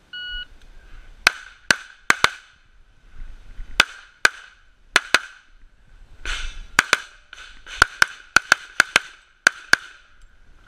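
A short electronic shot-timer start beep, then rapid pistol fire: about eighteen sharp shots, mostly fired in quick pairs with brief pauses between, as the shooter works through a stage.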